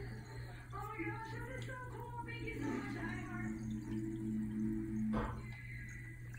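Faint music with shifting melody lines and held notes over a steady low hum. No clear fizzing or splashing from the bath bomb stands out.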